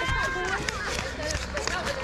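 A child's high-pitched voice is heard briefly at the start. After it come faint background voices and crackly rustling handling noise.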